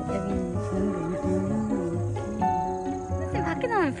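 Background music with a small dog growling low and wavering. Rising and falling whine-like calls start near the end.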